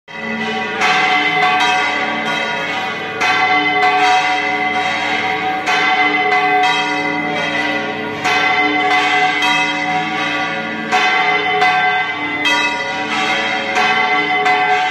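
Church bells ringing a peal, several bells struck in turn with a new stroke a little under once a second, each left ringing on.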